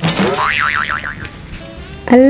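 Cartoon 'boing' sound effect: a quick upward swoop, then a fast wobbling pitch for about a second before it dies away.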